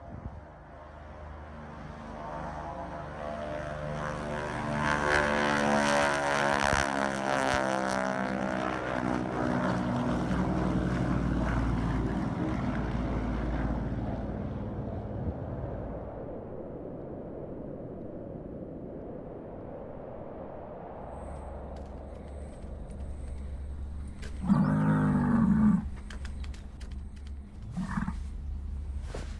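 Twin radial-engine propliner making a low pass: the engine and propeller drone swells as it approaches, is loudest about five to eight seconds in with its pitch sliding down as it goes by, then fades to a low hum. Near the end a brief, loud pitched sound stands out for about a second.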